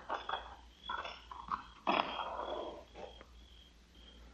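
Crickets chirping in a steady, evenly repeating pattern, a radio-drama sound effect for a rural outdoor scene. There are a few soft noises, and a louder brief one about two seconds in.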